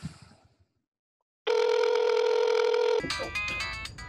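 A phone ringtone for an incoming call: a steady electronic tone held for about a second and a half, then a quick run of changing tones as it keeps ringing.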